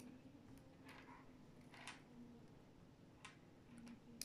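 Near silence with a few faint clicks of small neodymium magnet balls knocking together as a ring of them is twisted between the fingers.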